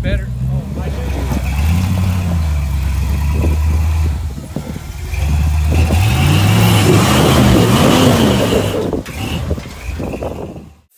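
Off-road vehicle engine running steadily under load, then revving up and down in swells from about five seconds in as a tube-frame rock-crawler buggy climbs a near-vertical rock ledge.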